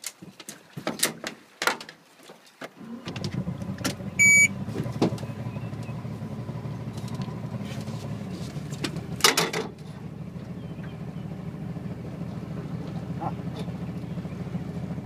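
A few knocks and clicks, then a boat motor starts about three seconds in and keeps running steadily at idle. A short electronic beep sounds just after it starts, and there is a brief loud burst about nine seconds in.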